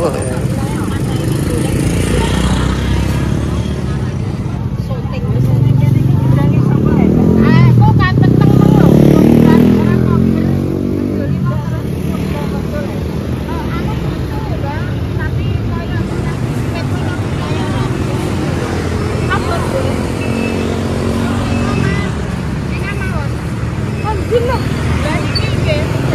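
Motorcycle engine passing close on the street, building from about five seconds in, loudest around eight to nine seconds, then fading, over steady street noise and people talking.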